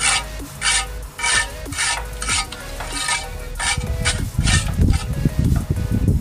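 A steel trowel scraping cement plaster across a concrete hollow-block wall in quick, repeated strokes, about two a second, as the render is spread and smoothed.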